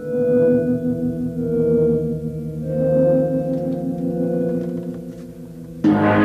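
Suspense background music: sustained low held tones that move slowly from note to note and swell and fade several times, then a sudden louder chord hits just before the end.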